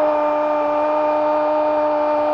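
Spanish-language football commentator's long goal cry, held on one steady note, over crowd noise.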